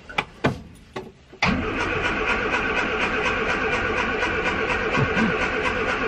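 A few light clicks, then, about a second and a half in, the starter motor of a 1975 Mini Clubman estate's A-series four-cylinder engine cuts in and cranks steadily, whining with an even beat about five times a second. The engine does not catch.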